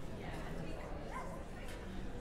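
Indistinct murmur of voices with no clear words, and one brief rising voice-like sound about a second in.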